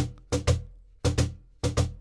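Cajon struck with the fingertips in quick pairs of light strokes, a pair about every half second, each stroke ringing briefly: the two grace-note taps of a drag rudiment.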